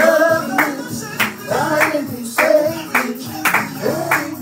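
A song with singing over a steady beat, with handclaps on every beat at a little under two claps a second.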